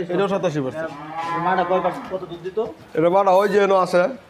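Black-and-white dairy cows mooing: a short call at the start, a long drawn-out moo about a second in, and another call near the end.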